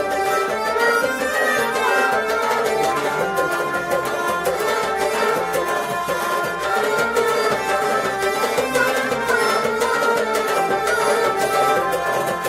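Kashmiri folk ensemble playing: harmonium and a bowed sarangi carry the melody, a clay-pot nout is drummed with the hands, and a rabab is plucked, in a steady, unbroken passage.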